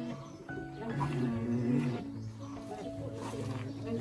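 A goat bleating while it is held for a blood draw, over steady background music.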